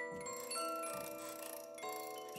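Quiet bell-like music: chime or glockenspiel notes struck one after another, each ringing on so that they overlap, with fresh notes about a quarter second in and again near the end.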